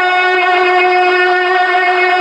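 A man singing a manqabat into a microphone, holding one long steady note.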